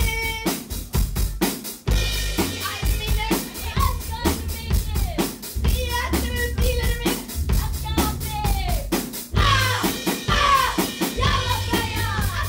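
A rock band playing live: a driving drum-kit beat of snare, kick and cymbals with bass guitar underneath, and a woman singing into a handheld microphone, her voice loudest in the last couple of seconds.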